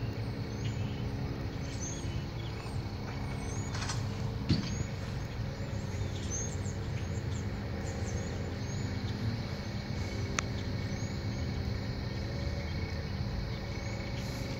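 Steady drone of diesel locomotive engines holding one pitch, with small birds chirping over it again and again. A sharp knock comes about four and a half seconds in, and a faint click about ten seconds in.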